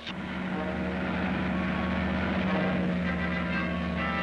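Car engines running fast and steady as two sedans race across rough ground, a constant drone that starts suddenly with the cut to the chase.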